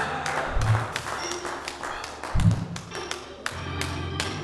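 Church organ music played softly, with low bass notes about half a second and two and a half seconds in, over many irregular sharp taps.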